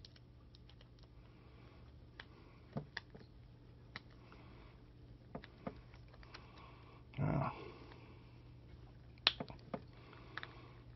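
Faint, irregular clicks and taps of a small precision screwdriver working on the tight screws that hold an LED bulb's circuit board. A short, louder rustle comes about seven seconds in, and a quick run of clicks comes near the end.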